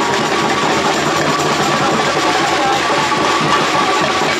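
Samba bateria drumming: a loud, steady, dense wash of drums and rattling percussion.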